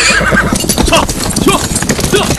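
Horses galloping, their hooves making a dense, irregular clatter, with the tail of a whinny fading out at the start.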